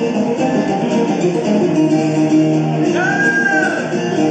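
Viola caipira, the Brazilian ten-string folk guitar, playing a fast plucked solo over acoustic guitar accompaniment. About three seconds in, a voice joins with one long high note.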